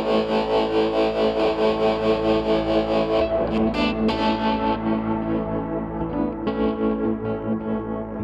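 Instrumental passage on a red semi-hollow electric guitar played through effects, over a bowed upright bass holding long low notes. The guitar pulses in a fast, even rhythm; about three seconds in, its bright top thins out and the notes ring on more softly.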